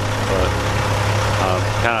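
A truck engine idling with a steady low drone, under a man's voice saying a few hesitant words.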